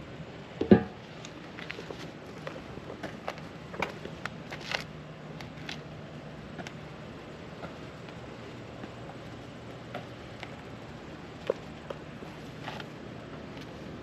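A car's fuel filler door snapping shut with one sharp click about a second in, followed by a few light clicks and handling taps over a faint steady hum.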